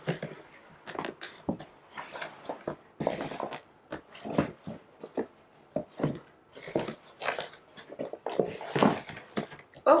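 Rolls of lace, some on cardboard cores, being handled and packed into a plastic storage bin: irregular rustles, shuffles and light knocks.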